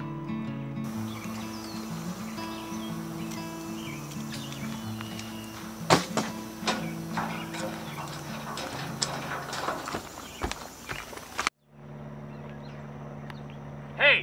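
Background music with slow, held notes, joined from about 6 s in by scattered sharp clicks and knocks, the loudest at 6 s. The music stops abruptly about 11.5 s in and gives way to a steady low hum.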